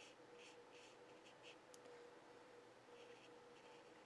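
Faint scratching of a fine paintbrush stroked across watercolour paper, a run of short strokes with a gap in the middle, over a faint steady hum.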